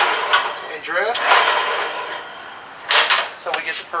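Chamfering tool in a drill press cutting a countersink into metal tubing: a rough, grinding cutting noise that dies away over the first two and a half seconds. A sharp knock follows about three seconds in.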